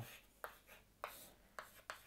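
Chalk writing on a blackboard: a few faint, short scratching strokes.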